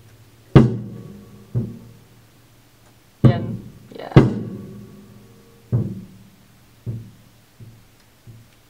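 A single acoustic drum struck on its own seven times, at uneven intervals and at clearly different strengths, each hit ringing briefly before the next; the loudest hits come about half a second and about four seconds in.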